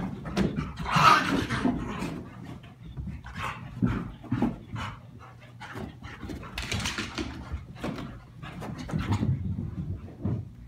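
A silver Labrador and a Chihuahua at rough play: dogs panting and scuffling in irregular bursts, loudest about a second in, with another flurry near the seven-second mark.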